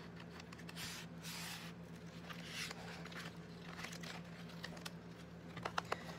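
Soft rustling and brushing of stiff, painted paper pages as a handmade altered book is handled and its taped doors pressed and swung open, with a few light clicks near the end.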